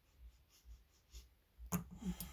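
Faint scratching and tapping from long fingernails handling a small wax melt cube, with a sharper click near the end.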